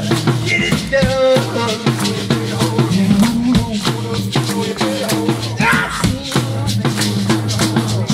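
A rock'n'roll band playing live: a steady percussive beat over low held notes, with short sung phrases about a second in and again near six seconds.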